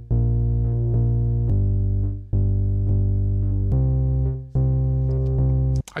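Meld software synthesizer with a bass preset in monophonic mode playing a chord progression's MIDI clip. It sounds only one note from each chord, as a sustained synth bass line of about six held notes that change pitch and stop just before the end.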